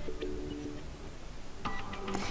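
Faint background music: a few soft held notes that fade in the first half, with brief higher notes near the end.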